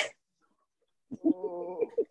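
A man laughing: a short breathy gasp, a pause, then a held, even-pitched laughing voice lasting just under a second.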